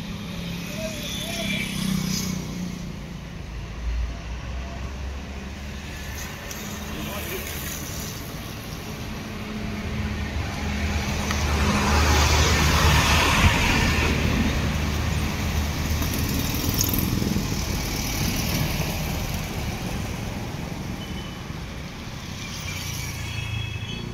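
Street ambience with a steady low motor rumble; a motor vehicle passes, growing louder to a peak about twelve seconds in and then fading away.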